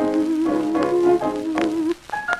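A 1926 78 rpm record playing the instrumental break of a 1920s dance-band song. A lead instrument carries the melody in long held notes with a slight waver, over the band, and the music drops away briefly near the end.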